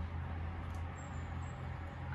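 A steady low hum with a faint even background hiss: room tone.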